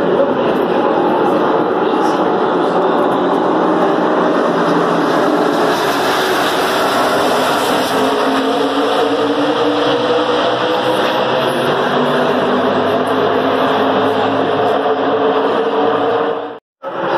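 A pack of NASCAR Cup Series stock cars, V8 engines at racing speed, running together in a loud steady drone. One engine note climbs slowly in pitch over the second half.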